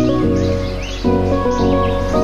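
Background music of held chords that change every half second or so, with short birdsong-like chirps over it.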